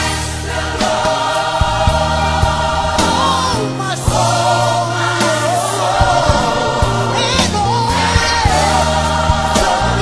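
Gospel choir singing long, held notes over an instrumental backing with a steady beat.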